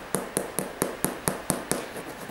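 Fingertips tapping on an Air Jordan 13 sneaker's heel and midsole in a quick even rhythm, about four to five sharp clicks a second.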